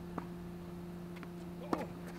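Tennis ball knocks on a hard court: a faint bounce shortly after the start and a sharp racket-on-ball hit near the end, over a steady low hum.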